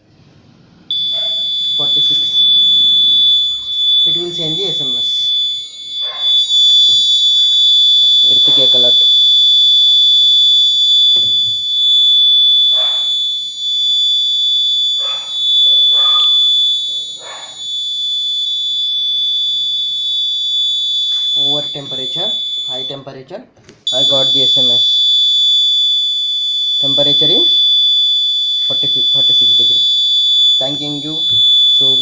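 Electronic alarm buzzer on the microcontroller board sounding one continuous high-pitched tone as a high-temperature alert, the sensor reading having passed the 45-degree threshold. It starts about a second in, cuts out briefly near the 23-second mark and comes straight back on.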